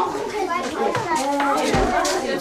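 Young children's voices talking in a classroom.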